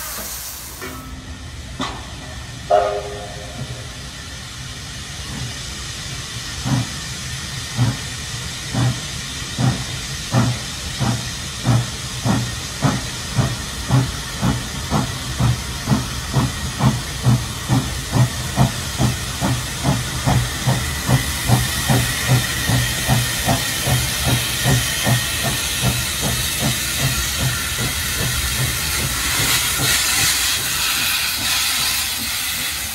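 NSW 36 class steam locomotive 3642 working hard as it gets under way, its exhaust chuffs quickening from about one a second to about three a second. Steam hisses from its open cylinder drain cocks and grows louder as it comes closer. A short whistle toot sounds about three seconds in.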